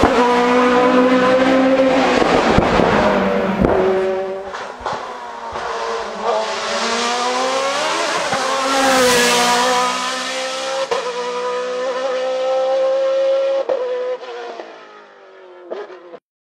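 Osella FA30 sports prototype's Zytek racing engine at high revs climbing a hill course. Its note jumps and glides through gear changes, rises and falls as the car passes close about eight to nine seconds in, then fades away near the end.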